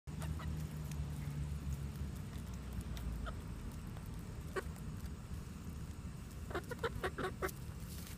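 Hens clucking softly as they peck at a banana through chicken wire, with a quick run of short clucks near the end. Sharp little clicks of beaks pecking are scattered throughout, over a low rumble in the first few seconds.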